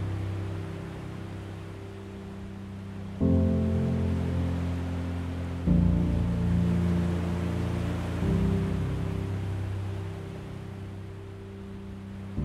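Slow, gentle piano music with low sustained chords, a new chord struck about every two and a half seconds, over a steady wash of ocean waves breaking on a beach.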